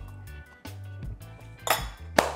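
Background music, with a metal fork clinking against a plate near the end.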